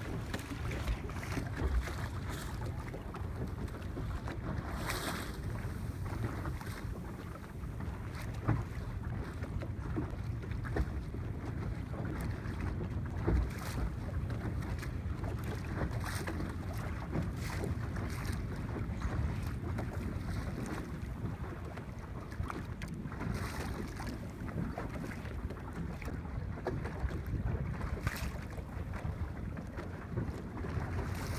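Wind buffeting the microphone in a steady low rumble, with short splashes or knocks a few times as water slaps against a small boat on choppy water.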